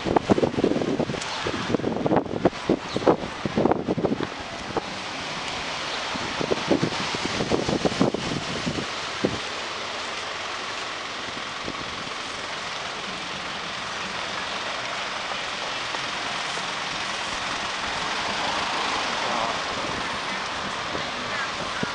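City street traffic: cars and a bus passing, a steady wash of road noise. Irregular low thumps through roughly the first half, after which only the even traffic noise remains.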